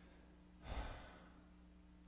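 A man's single audible breath out into a close microphone, about half a second long, a little under a second in, over a faint steady hum.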